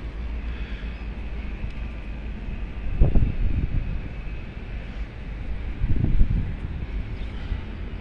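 Wind buffeting the microphone of a handheld phone: a steady low rumble, with two stronger gusts about three and six seconds in.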